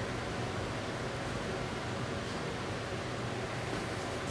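Steady, even hiss of room tone, with no distinct events.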